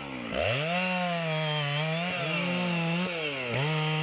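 Two-stroke chainsaw felling a pine: the engine revs up sharply just after the start and runs steady at full throttle as the chain cuts into the base of the trunk, its pitch dipping briefly a few times under the load of the cut.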